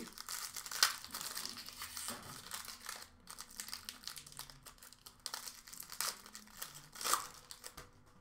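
Foil trading-card pack wrapper crinkling and tearing as it is pulled open by hand, with irregular crackles and a few louder rips. The pack is a stubborn one that is hard to open.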